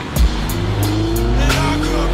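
A car's engine note climbing as it revs, with tyres squealing, under music with a steady beat.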